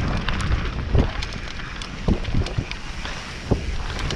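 Mountain bike rolling down a dirt and rock trail: tyres rumbling over the ground with wind buffeting the camera mic, and the bike clattering over bumps with several sharp knocks, the loudest about a second in.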